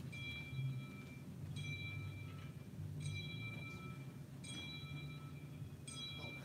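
A bell-like chime struck evenly about every second and a half, five times, each strike ringing a few clear high tones that fade before the next. A steady low hum runs underneath.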